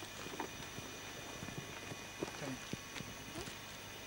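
Footsteps on dry, leaf-strewn ground: scattered light clicks and crunches, the sharpest about halfway through.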